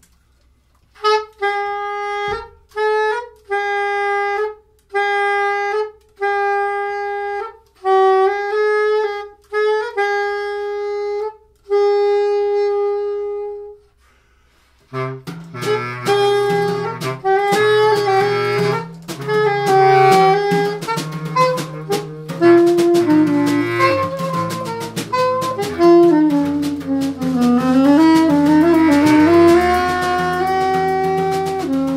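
A lone woodwind plays a phrase of short, separated notes on much the same pitch for about 13 seconds. About 15 seconds in, a small jazz group comes in together: soprano saxophone and bass clarinet over electric bass guitar and drums, in an improvised ensemble passage.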